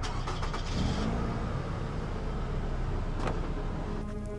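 Car engine running steadily at idle, a low rumble, with a few light clicks in the first second.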